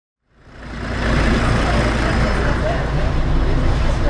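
A city bus's engine running with a steady low rumble, heard from inside the bus, fading in over the first second. Faint voices of passengers are mixed in.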